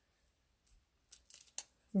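A few light clicks and rustles of a thin cardstock banner strip being handled and laid down on a cutting mat, spread over about half a second past the middle; otherwise quiet.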